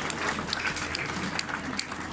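Concert audience applauding in a small hall: a steady spread of hand claps.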